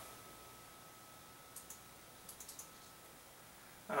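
Faint computer mouse clicks: two clicks about a second and a half in, then a quick run of four or five clicks a little later.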